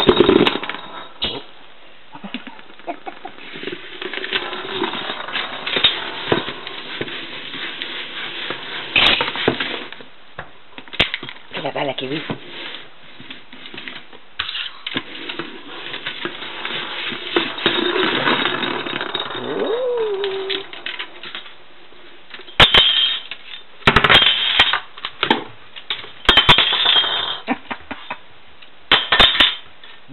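A pet parrot playing with toys on a kitchen countertop: a clear plastic bowl and a metal ring knocking, scraping and clinking on the counter, with sharp clinks coming thick and fast in the last several seconds. Short voice-like chatter is heard now and then.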